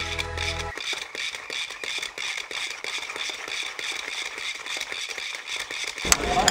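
A short sustained music chord cuts off about a second in. It gives way to a fast, irregular clicking rattle with a steady high whine, from the hand-pumped twisted-bar generator spinning its flywheel.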